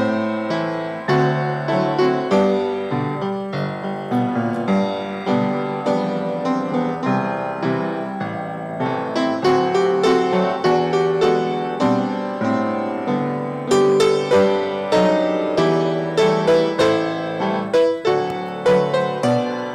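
Solo piano playing a continuous, flowing piece of melody and chords, each struck note dying away.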